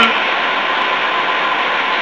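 Steady, even background hiss in a pause between speech, with no distinct event.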